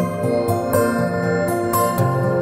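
Background music: held keyboard-like notes, with a new note or chord coming in every half second or so.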